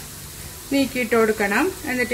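Jalebi batter spirals deep-frying in a shallow pan of hot oil, a steady sizzle. A voice starts talking over it about two-thirds of a second in.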